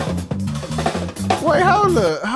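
Live drum kit being played in quick strokes over a repeating bass line, with a voice coming in near the end.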